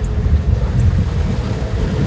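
Wind buffeting the microphone on an open boat at sea: a loud, uneven low rumble, with water noise around the hull beneath it.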